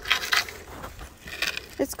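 Snow crunching underfoot, about three short crunches: footsteps in deep snow.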